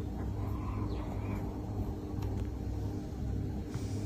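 Quiet, steady low rumble of background noise with a faint steady hum.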